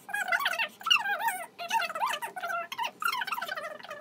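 Fast-forwarded speech: a woman's voice talking rapidly, pitched up to a high, squeaky chipmunk chatter.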